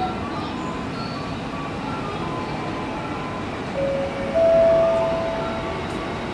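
Keikyu 1000-series electric train running into the station, a steady rumble of wheels and motors. About four seconds in, its horn sounds one steady note that steps up to a louder, slightly higher note and holds for about a second and a half.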